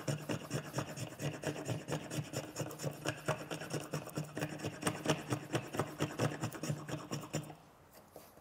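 Spokeshave taking quick, repeated scraping strokes across a hardwood axe handle, tapering its shoulder. The shaving stops near the end.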